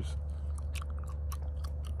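Soft, irregular little clicks and smacks of mouth noise close to the microphone, over a steady low hum.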